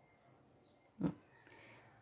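Mostly quiet room tone, broken about a second in by one short, low vocal noise from a person.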